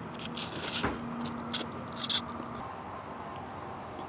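A person slurping pho rice noodles off chopsticks and chewing, in several short bursts during the first second and again around two seconds in.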